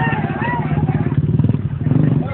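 Motorcycle engine running close by, its rapid pulsing rumble growing louder toward the end, with men's voices calling out over it.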